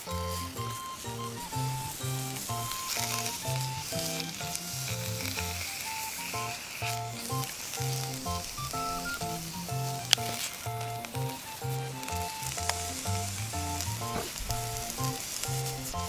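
Pickled napa cabbage sizzling steadily as it stir-fries in oil in a seasoned frying pan, turned with chopsticks, with one sharp click about ten seconds in.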